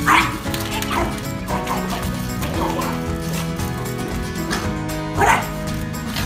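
A small terrier barking at the front door, a few sharp yaps with the loudest at the start and about five seconds in, over background music.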